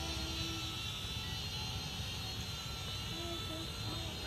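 Small toy quadcopter's electric motors and propellers giving a steady high-pitched whine in flight.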